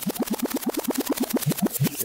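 A track on a Pioneer XDJ-RX2 being scrubbed with the jog wheel while a cue point is sought: a rapid, even stutter of short snippets of the music, about ten a second, each one rising in pitch.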